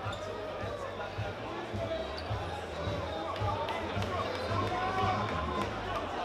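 Many voices talking at once in a large hall, with uneven low booming underneath.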